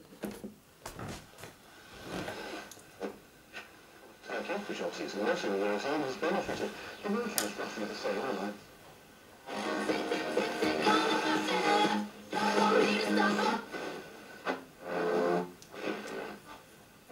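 Tesla A5 radio-cassette recorder's small built-in speaker playing a radio broadcast of music and speech, after a few clicks as its controls are switched on. The sound drops out briefly twice as the tuning wheel is turned between stations.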